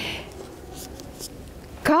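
Faint rubbing with a couple of soft ticks from a book being handled, over quiet room tone in a pause between a woman's sentences; her voice returns near the end.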